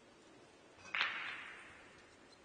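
A single sharp clack of a pool shot about a second in: cue and balls striking. A noisy tail fades away over most of a second.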